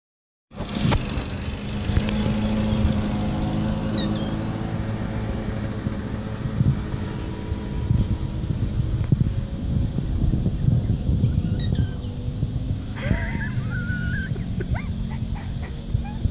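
Petrol walk-behind lawn mower engine running steadily while it cuts grass.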